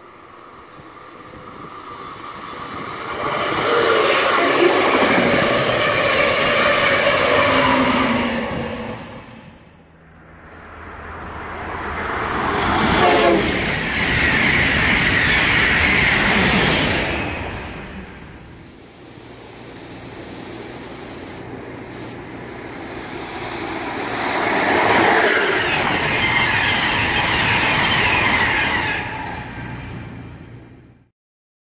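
Electric passenger trains passing at speed three times, each pass rising and fading; the middle pass is an Amtrak Acela Express trainset. A horn sounds during the first pass.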